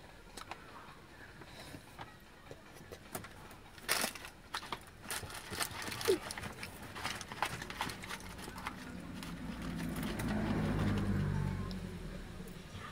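Close-up crinkling of a paper food wrapper and small clicks of eating, with a sharper burst of rustling about four seconds in. From about eight seconds a vehicle's engine rumble swells, loudest near the end, then starts to fade as it passes.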